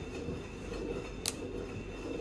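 A single sharp click about a second in, over a steady low hum: the MagSafe charger connector snapping onto the MacBook Air's charging port.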